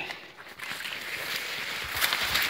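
Maize leaves rustling and brushing past as a person walks on foot through dense rows of corn, a steady rustle that starts about half a second in.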